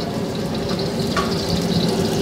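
Minced garlic sizzling steadily in hot oil in a steel wok over a high-flame gas wok burner.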